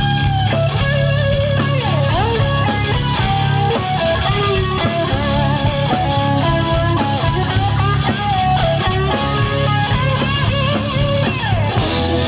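Live rock band playing an instrumental passage: a distorted electric guitar (a sunburst Les Paul-style) plays a lead line with pitch bends and slides over bass guitar and a steady drum beat.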